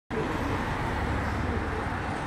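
Steady urban traffic noise, a continuous low rumble of road vehicles with no single event standing out.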